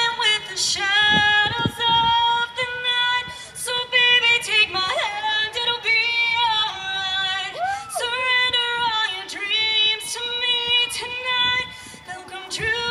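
Live female lead vocalist singing a run of high, long-held notes into a microphone, with slides between notes, over a rock band playing lightly beneath.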